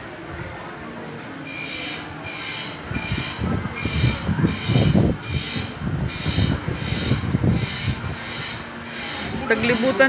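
Rhythmic rasping scrape repeating about twice a second, with heavy low rumbling through the middle.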